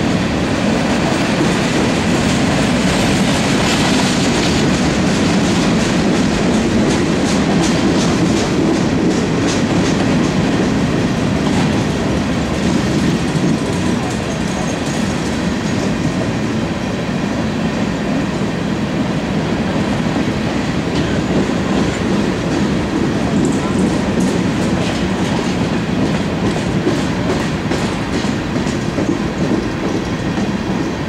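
Freight train of covered hopper cars rolling past at steady speed: a continuous rumble of steel wheels on rail, with two stretches of rapid clicking as the wheels cross rail joints.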